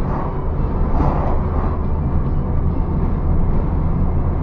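Steady in-cabin noise of a car driving on a highway: a low engine and tyre drone with road rumble, even in level throughout.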